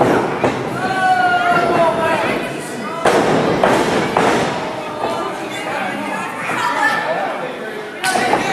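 Spectators shouting and calling out in a large echoing hall, with one long held shout about a second in. Sharp impacts cut through just at the start and about three seconds in.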